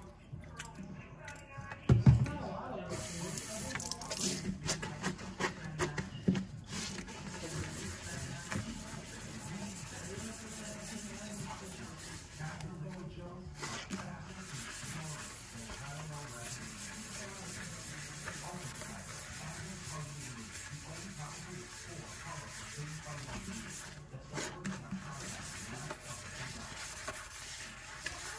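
Sponge scrubbing a soapy stainless steel sink, a steady rubbing hiss that pauses briefly twice, after a single thump about two seconds in.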